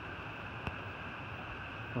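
Steady outdoor background hiss with a constant high band in it, and a single faint click about two-thirds of a second in.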